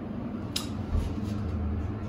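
Otis hydraulic elevator car arriving at its floor: a sharp click about half a second in, then a low rumble from about a second in, over the car's steady hum.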